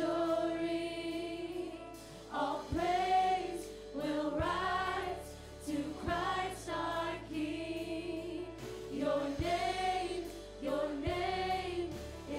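A live worship band and choir singing a gospel song: several voices hold long sung notes over steady low accompaniment notes that change every couple of seconds.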